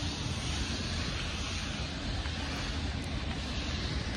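Steady outdoor street noise: road traffic with a low rumble of wind on the phone's microphone.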